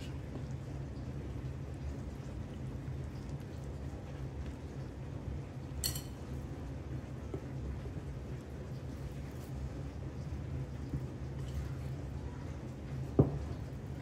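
A metal spoon stirring a wet flour-and-water bread dough in a glass bowl, with a sharp click of the spoon on the glass about six seconds in and again near the end. Under it runs the steady low hum of a dishwasher.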